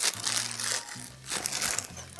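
Clear plastic bag crinkling in bursts as a wire plate hanger is pulled out of it, over background music.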